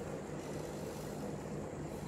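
Steady low background rumble with a faint hum and no other events.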